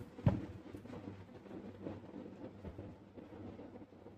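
A single sharp click of a digital multimeter's rotary range switch being turned, followed by faint handling sounds as the test leads are picked up.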